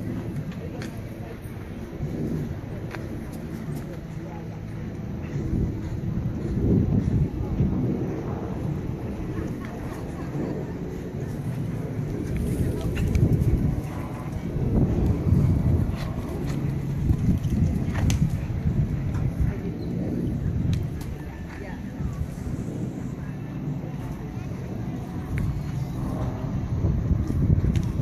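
Outdoor ambience: wind rumbling on the microphone, swelling and fading, with indistinct voices in the background.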